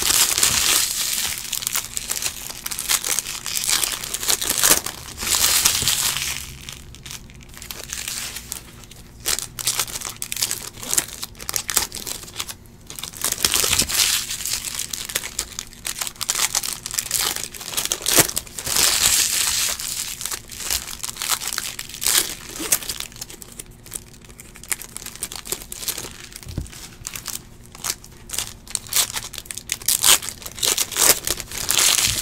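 Foil wrappers of Bowman baseball card packs being torn open and crinkled by hand. The crackling comes in bursts of a few seconds each, with quieter gaps between.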